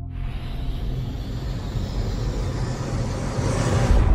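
Logo-sting sound effect: a rushing, rumbling swell over a steady low drone, building up to a deep hit at the very end.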